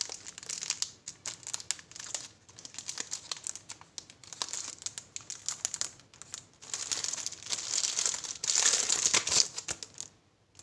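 Clear plastic wrapping on a cardboard paint box crinkling under the fingers as it is handled, in irregular crackles that grow loudest near the end.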